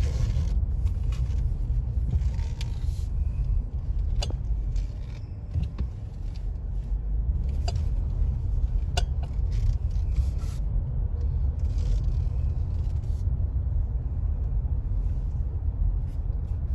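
Low, steady rumble of a car driving slowly in traffic, heard from inside its cabin, with a few faint clicks.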